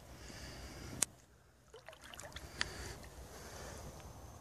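Faint water sounds of a small dog swimming, its paws paddling at the surface, with a sharp click about a second in.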